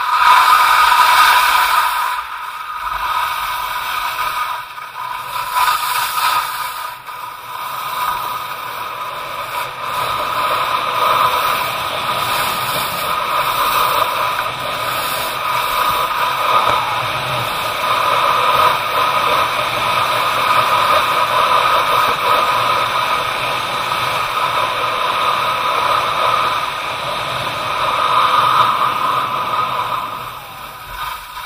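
Skis sliding and scraping over hard, icy groomed snow during a run, a loud continuous hiss.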